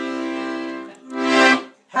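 Piano accordion holding a chord that fades out about a second in, then one short, louder closing chord with a burst of hiss, cut off sharply.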